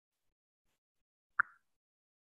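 Near silence broken once, about one and a half seconds in, by a single short click or pop.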